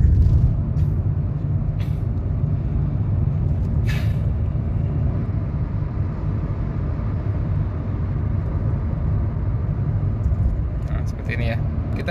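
Steady low rumble of road and engine noise inside a Hyundai Stargazer's cabin cruising at about 65 km/h, picked up through a phone's built-in microphone, with a few short clicks in the first few seconds.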